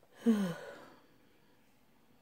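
A woman sighs once, a short breathy sigh falling in pitch.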